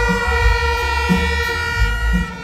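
Live reggae band music: a heavy bass beat under one long, steady held note, which cuts off near the end.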